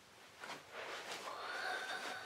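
A man's high falsetto vocal sound, a wordless 'ooh', that starts about a second in, rises a little in pitch and is held. A short click comes just before it.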